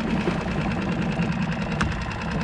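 A small outboard motor on a one-person skiff idling steadily, with an even, rapid rhythm. A single sharp click comes near the end.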